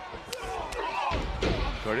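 Wrestling-ring impacts: two sharp hits in the first second, then heavier low thuds of a body landing on the ring mat.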